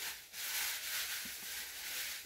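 A rustling hiss of something rubbing close against the microphone: a short burst at the start, then a steadier rub from about half a second in.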